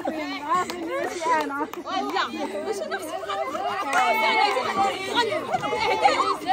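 Several people talking over one another in lively overlapping chatter, mostly women's voices.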